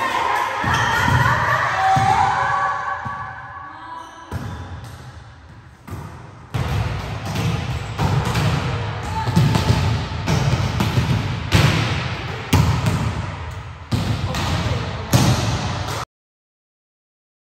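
Volleyballs being hit and bouncing on an indoor court floor during a training drill: a string of sharp thuds at irregular intervals, most of them in the second half.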